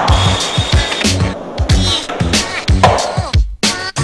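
Skateboard rolling and snapping on a smooth hard floor, mixed with a music track with a heavy beat that drops out briefly near the end.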